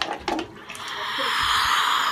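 A young girl gargling a mouthful of water with her head tilted back: a rushing, gurgling noise that swells for about a second and a half and then stops. A brief click comes right at the start.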